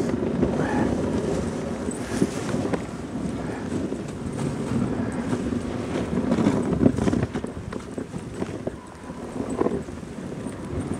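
Dog sled running over packed snow behind a husky team: the runners sliding and crunching on the trail, with many irregular small knocks and the dogs' paw-falls, and some wind on the microphone.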